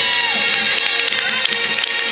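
Marching band playing: sustained wind chords with frequent sharp percussion strikes.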